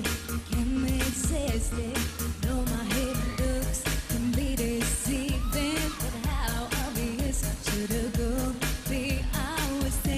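Pop song performed on stage: a woman's lead vocal over a band with a steady drum beat.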